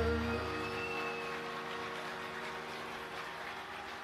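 Tanpura drone ringing on and slowly fading as the last notes of a Hindustani classical vocal piece die away.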